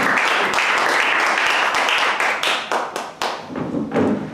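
Audience applauding, the clapping thinning out and dying away about three seconds in.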